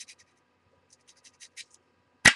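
Faint scratching of a number two graphite pencil shading on paper in quick back-and-forth strokes. The strokes stop just after the start and resume about a second in.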